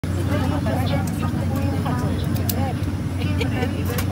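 Steady low hum of a parked airliner's cabin, with other passengers' voices talking throughout.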